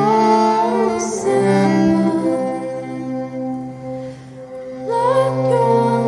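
A woman singing long, held notes over fiddle accompaniment in a folk duo performance, with a new phrase starting near the end.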